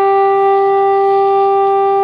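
Soprano saxophone holding one long, steady note, with no other notes starting while it sounds.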